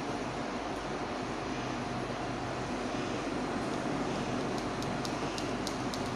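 Milky tea simmering in a steel saucepan on an electric cooktop: a steady hiss with a low hum, and a few faint ticks in the second half.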